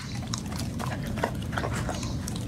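A chocolate Labrador eating off a plate: wet chewing and snuffling, with scattered sharp clicks of teeth and mouth, over a steady low background hum.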